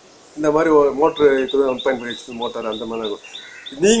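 A man speaking, with a bird chirping behind him in quick, evenly spaced repeats, about six chirps a second for some two seconds.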